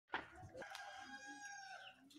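A short knock right at the start, then a rooster crowing once, faint, with one long held note that drops slightly at the end.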